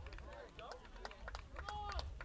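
Faint, distant shouting voices of players on a sports field, a few short calls, with scattered small clicks.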